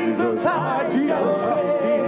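Male southern gospel quartet singing in harmony, several voices sliding between notes and then holding a note with vibrato in the second half.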